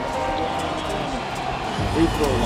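Background music over game-broadcast arena noise, with a faint crowd sound underneath.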